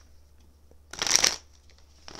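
A deck of Gilded Tarot cards being shuffled: one quick burst of riffling, about half a second long, a second in.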